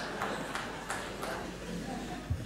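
Theatre audience laughing, dying away toward the end, with sharp clicks about three times a second.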